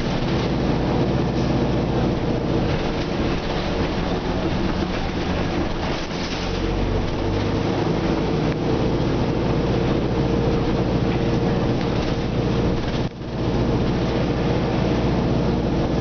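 Nova Bus RTS city bus heard from inside the passenger cabin while under way: a steady, deep engine hum mixed with road and body noise. The low engine tone shifts about six seconds in, and the sound drops out briefly around thirteen seconds in.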